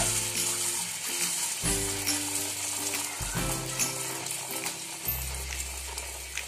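Small pani puri dough discs frying in hot oil in a kadhai, a steady sizzle with scattered small pops, under background music with sustained chords.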